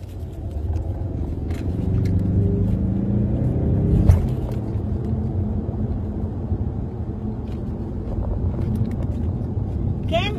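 Car engine and road noise heard from inside the cabin: a steady low rumble whose engine note rises over the first few seconds as the car speeds up, with a single sharp thump about four seconds in.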